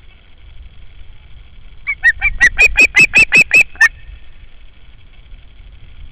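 Osprey giving a quick series of about ten sharp, whistled calls over some two seconds, getting louder as the series goes on.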